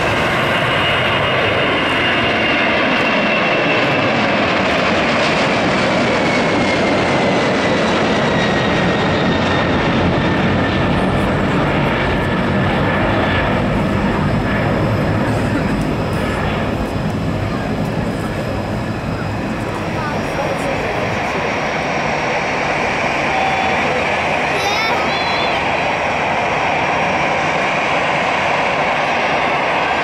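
Boeing 767-300ER's two General Electric CF6 turbofans at takeoff thrust as the jet climbs out after liftoff: a loud, steady jet roar with a whine that slides down in pitch over the first ten seconds or so as the aircraft pulls away.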